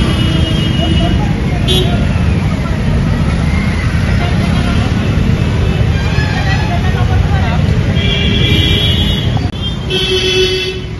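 Roadside traffic passing close by, with people talking and a vehicle horn sounding about eight seconds in.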